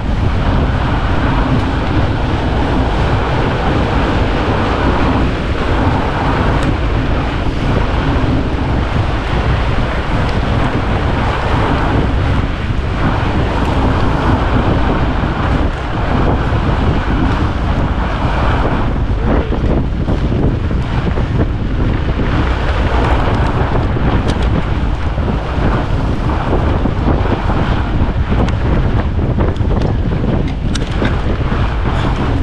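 Steady wind buffeting the microphone of a GoPro Hero 10 action camera moving at about 14 mph, a loud rushing noise heavy in the low end.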